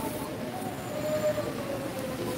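Steady background noise of a large hall full of seated people, with a faint drawn-out tone sloping slightly downward from about half a second in.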